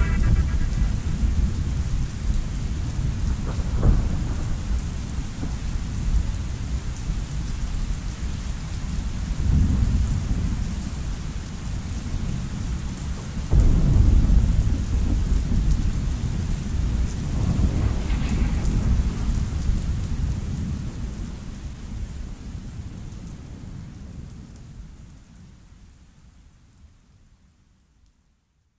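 Steady rain with several rolls of thunder; the loudest roll breaks suddenly about halfway through. Everything fades out over the last several seconds.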